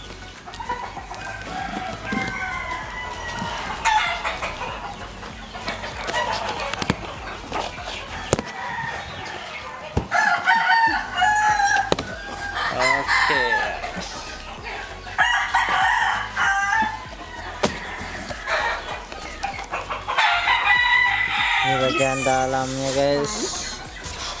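Fighting roosters (gamecocks) crowing over and over, with chickens clucking. Occasional sharp knocks and scrapes come from a cardboard box being slit open and its flaps pulled back.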